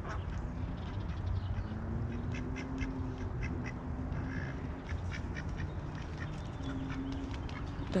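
Mallard ducks quacking now and then over a low steady rumble.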